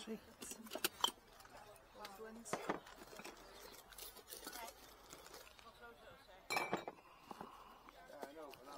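Small hard objects clinking and knocking together as items are handled at a stall table, with the loudest cluster of knocks about six and a half seconds in. Faint voices sit in the background.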